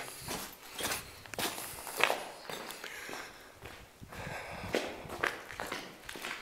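Footsteps of a person walking across a concrete floor strewn with grit and fallen plaster: irregular steps, about two a second at times.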